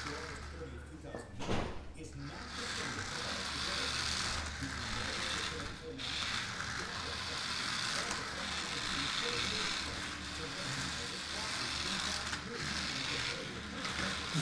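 Small electric motor and gears of a remote-control toy car whirring steadily, with short breaks about 6 and 12 seconds in as it stops and starts. A sharp click comes about a second and a half in.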